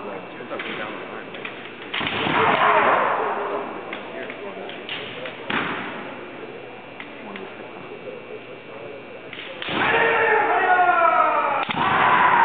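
Kendo fencers' kiai shouts with sharp cracks of bamboo shinai strikes, echoing in a large gym. There is a loud shout about two seconds in, a sharp crack about five and a half seconds in, and long drawn-out shouts with sliding pitch from about ten seconds to the end, broken by another sharp crack.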